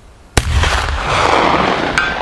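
Martini-Henry Mk I rifle firing a .577/450 black-powder cartridge: one sharp report about a third of a second in, followed by a long echo rolling off the surrounding hills.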